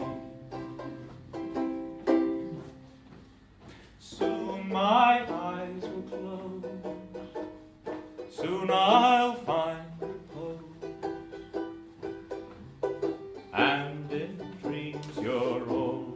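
Banjolele strumming chords for a slow song, with a voice singing phrases over it a few times.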